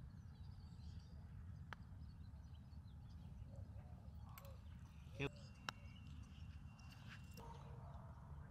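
Faint putter click as a golf ball is struck on the green, about two seconds in, over a quiet outdoor background with a low steady rumble. A second short knock comes past the middle.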